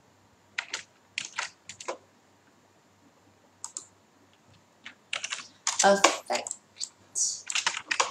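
Computer keyboard keystrokes and clicks in a few short runs during the first two seconds, and once more a little later. A woman's voice follows near the end, saying the word "affect".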